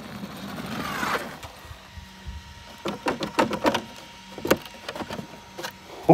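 Electric motor and drivetrain of a Traxxas XRT RC monster truck whining up in pitch as it accelerates on sand, then a few short sharp sounds over a faint steady hum.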